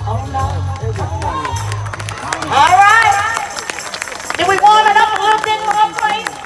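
Live band music from an outdoor stage, with a steady bass line that stops about halfway through, overlapped and followed by loud voices close to the microphone.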